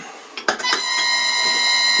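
Electric motor run from a VFD at 10 Hz, switching on with a click about half a second in, then a steady high-pitched electrical whine of several pitches as it turns the lathe at low speed.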